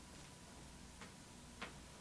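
Near silence: faint room tone with two short clicks, a weak one about a second in and a sharper one about half a second later.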